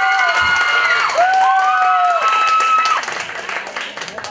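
Audience applauding, with a few people calling out long held cheers that overlap each other; the cheers stop about three seconds in and the clapping goes on more quietly.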